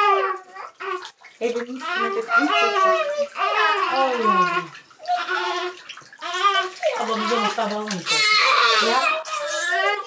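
Newborn baby crying in high, wavering wails during a bath, with water poured over it from a plastic jug.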